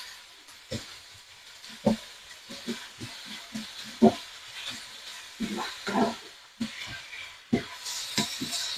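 Diced chicken and onions frying with a faint sizzle in a nonstick pan, while a wooden spatula stirs them, scraping and knocking against the pan at irregular intervals.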